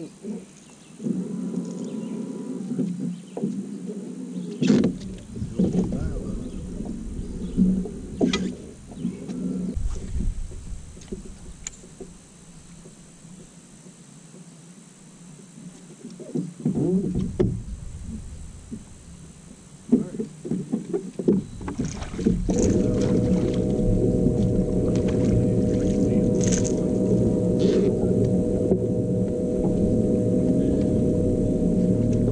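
Bass boat's bow-mounted electric trolling motor running with a steady hum, which grows louder and more even about three-quarters of the way through. A low rumble comes and goes, with scattered clicks and knocks.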